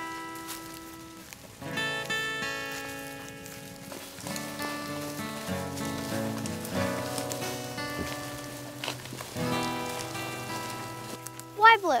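Background music on acoustic guitar: chords struck every second or two, each left to ring and fade.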